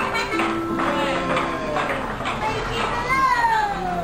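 Electronic tune from a coin-operated children's ride, a few held notes, with children's excited voices over it and a long falling squeal near the end.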